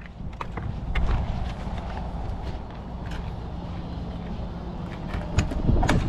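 Footsteps and scattered light clicks and knocks over a steady low rumble, with a few sharper clicks near the end.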